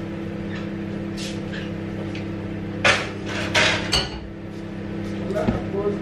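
Kitchen clatter of cookware and utensils being handled: a sharp clank about three seconds in and two more knocks just after, over a steady low hum.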